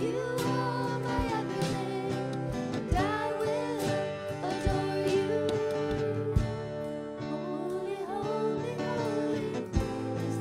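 Contemporary church worship band playing a slow praise song: voices singing over sustained guitar and keyboard chords, with drum hits every second or two.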